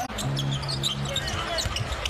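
Basketball dribbled on a hardwood court amid the arena's game sound, over music holding a few steady low notes.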